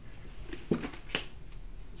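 A few faint short clicks, the clearest two about half a second apart near the middle, over a low steady hum.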